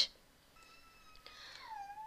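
A faint, drawn-out animal cry: a single pitched call that holds steady, dips in pitch about three quarters of the way through and climbs again near the end.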